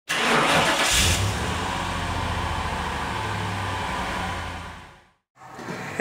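A V8 car engine revving once about a second in, then running steadily before fading out near the end.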